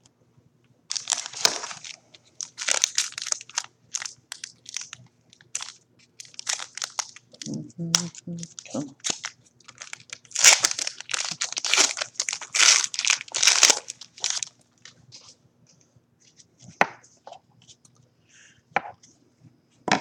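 Wrapper of a football trading-card pack crinkling and tearing as it is ripped open by hand, in a long run of crackly rustles. The rustling thins out after about fourteen seconds, leaving a few light clicks near the end.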